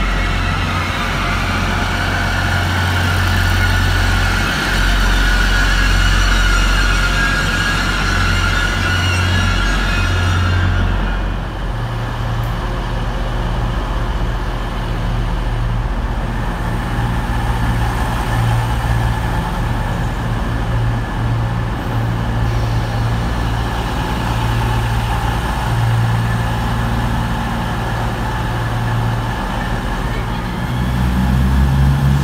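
Diesel train engines at a station platform. For the first ten seconds or so, a Grand Central diesel train runs along the platform with a low engine note and a whine above it. Then the whine drops away and a CrossCountry Voyager's underfloor diesel engines carry on with a steady low rumble as it stands at the platform.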